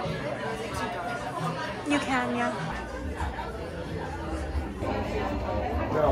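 People chatting in a room, several voices talking over one another, with a low rumble joining in a few seconds in.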